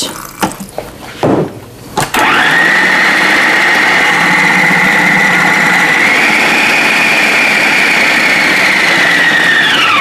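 A little water is poured into the feed tube, then an electric food processor is switched on about two seconds in and runs steadily with a high whine, mixing a thick, sticky carob dough. Its pitch rises a little midway, and it cuts off near the end.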